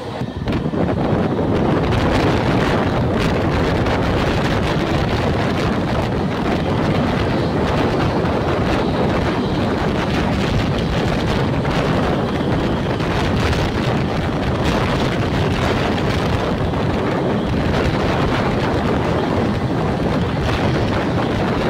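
Steady, loud rush of wind buffeting the microphone, mixed with the running noise of a moving passenger train on its rails, heard from an open coach door.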